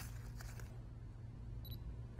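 Quiet room tone with a steady low hum, and one short high-pitched electronic beep near the end.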